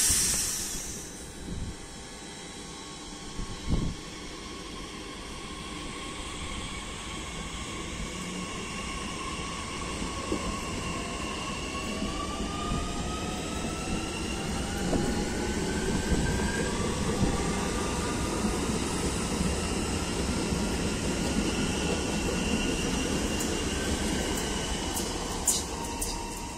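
Z 50000 "Francilien" (NAT) electric multiple unit pulling out: after a short loud hiss at the start, the traction motors' whine rises in pitch as it accelerates, over a building rumble of wheels on rail. A few sharp clicks come near the end.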